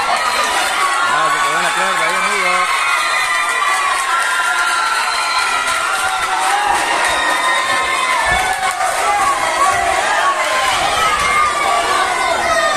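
Ringside crowd shouting and cheering, many voices at once and steady throughout, with one man's voice calling out, wavering, about a second in.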